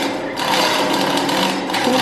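Chain hoist running as it lowers a heavy dynamometer roller unit into its floor pit: a steady mechanical whir with a fast rattle.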